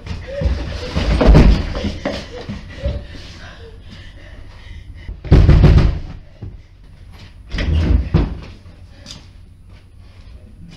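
Heavy banging on a wooden door in three loud bouts, about a second, five and a half seconds and eight seconds in, with brief voices between them.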